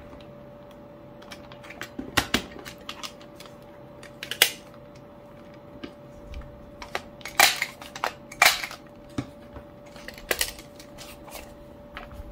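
A CARL handheld six-ring hole punch and its plastic punch guide clacking as diary refill sheets are lined up and punched: a dozen or so sharp clicks spaced unevenly, the loudest pair a little past halfway, with paper sliding and rustling between them.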